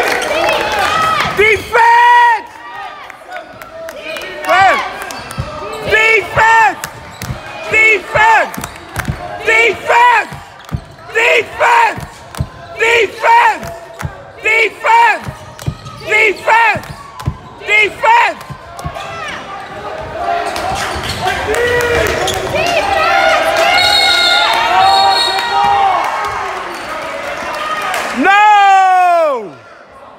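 Basketball shoes squeaking on a hardwood gym floor during play: many short, sharp squeaks mixed with ball bounces through the first half. Then crowd voices and shouts rise, and a long squeal falls in pitch near the end.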